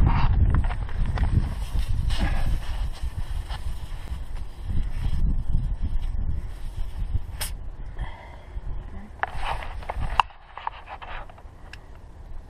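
Portable VIAIR air compressor running with a dense, pulsing rumble while it fills a trailer tire through its hose. It cuts off abruptly about ten seconds in. There is one sharp click shortly before the stop.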